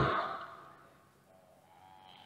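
A man's voice trailing off at the end of a word, its echo fading out within about half a second, then near silence with a faint breath near the end.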